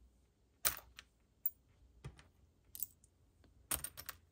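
Small metal coin charms clicking and clinking against one another as they are picked out of a loose pile by hand. There are about five light, separate clicks spread over a few seconds.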